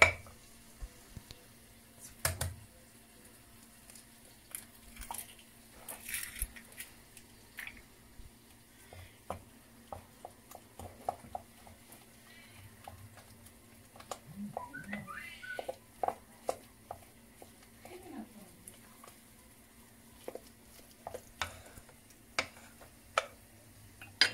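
Scattered light clicks and taps against a glass bowl as eggs are cracked and added to mashed potato, with soft handling noises of the mixture.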